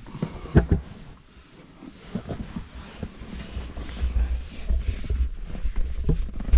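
Scattered scuffs and knocks as the camera is moved through a narrow rock cave passage, with low handling rumble that grows stronger in the second half.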